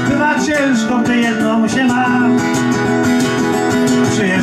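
Acoustic guitar strummed in a steady rhythm, with a man's voice singing long held notes over it.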